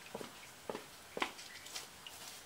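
Three soft footsteps about half a second apart as a person walks away.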